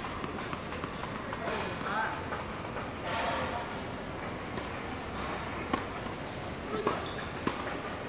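Three sharp knocks of a tennis ball struck by rackets and bouncing on the hard court, in the last few seconds as the serve goes in and a rally starts, over voices talking in the background.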